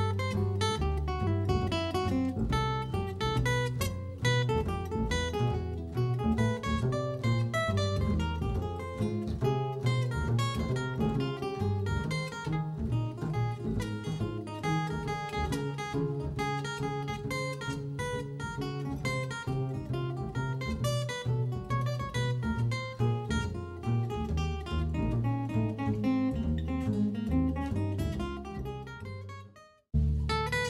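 Steel-string acoustic guitar playing an instrumental piece live, picked melody lines over low bass notes. The music fades out near the end.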